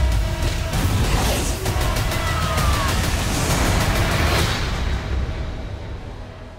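Loud, dense trailer music and sound design: a heavy low rumble under a run of quick, sharp hits. It fades out over the last second or so.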